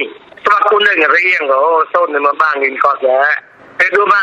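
Speech only: a news reader talking in Mon, with short pauses.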